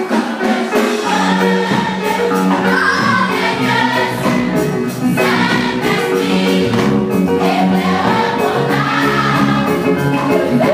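Girls' choir singing a gospel song together.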